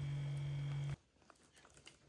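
A steady low hum that cuts off suddenly about a second in. It is followed by a few faint light taps of bare feet stepping onto a digital bathroom scale on a tiled floor.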